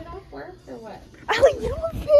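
A girl's voice making high, wavering wordless noises, getting much louder about two-thirds of the way in.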